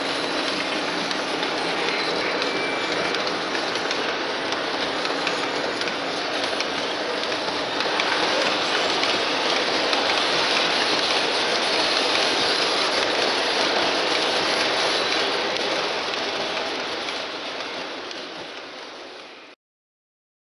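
Three-rail O-scale model train running along the track: a steady, noisy sound of wheels and motor, a little louder about eight seconds in, fading away near the end and then cutting off suddenly.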